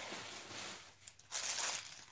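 Clear plastic wrapping on a handbag's handles crinkling and rustling as the bag is handled, loudest about a second and a half in.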